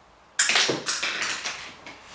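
A LEGO flick-fire missile flicked off the model and clattering onto a studded plastic baseplate: a sudden burst of plastic clicks and rattles about half a second in, with a few quick sharp hits that fade over about a second and a half.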